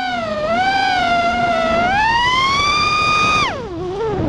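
FPV quadcopter's brushless motors and propellers whining, heard close from the onboard camera. The pitch follows the throttle: it dips slightly, climbs to a high, held note, then falls sharply near the end as the throttle comes off.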